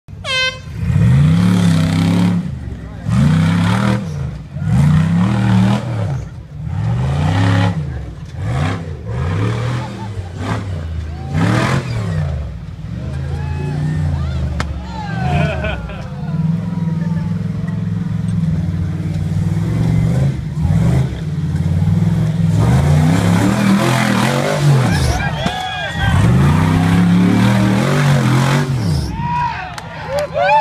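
A rock-crawler buggy's engine revving up and down over and over, about one swell every second and a half. It then holds a steadier, heavier pull for several seconds and near the end goes back to rising and falling revs. Spectators' voices are heard over it.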